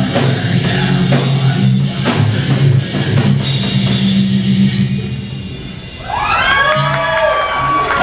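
Live heavy metal band with drum kit and distorted electric guitars playing the end of a song; the music dies away about five seconds in, and the crowd cheers and yells as it ends.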